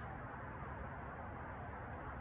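Faint steady outdoor background noise: an even hiss with a low rumble and no distinct sound event.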